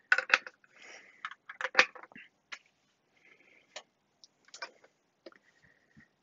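Rotary switch knobs of a resistance decade box clicking irregularly as the box is handled and set, the loudest click a little under two seconds in.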